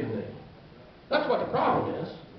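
A man preaching through a microphone and the room's speakers: one phrase trails off, there is a short pause, and about a second in comes a loud, exclaimed phrase.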